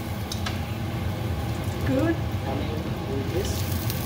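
Slices of bread shallow-frying in hot oil in a frying pan: a steady sizzle.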